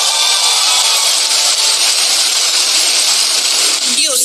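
Large audience applauding, a dense steady clapping noise.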